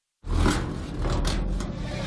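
Cartoon magic sound effect: after a moment of silence, a low rumble starts suddenly and carries on, with a few sharp crackles over it, as a purple magical mass seethes on a locker.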